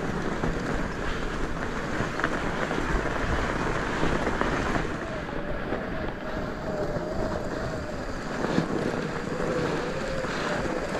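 Wind rushing over the microphone and tyre noise while riding an electric fat bike along a packed-snow trail. A faint wavering whine comes in about halfway through.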